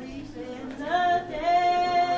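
A woman singing, her voice gliding up about a second in and then holding one long steady note.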